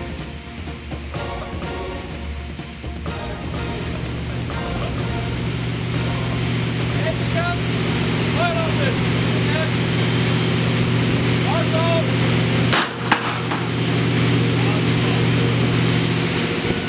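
A steady low droning hum, growing louder, then a single sharp shot about thirteen seconds in: a line-throwing gun firing a line across to the supply ship during refuelling at sea.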